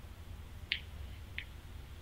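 Two faint, short clicks about two thirds of a second apart as a man draws on the mouthpiece of a small Elites pod e-cigarette, over a steady low hum.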